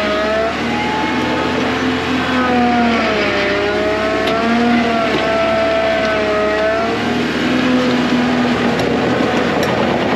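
Caterpillar 953 track loader's diesel engine working hard as the bucket digs into a dirt pile and lifts a load, its pitch sagging and rising again with the load, over a steady noisy clatter of the machine.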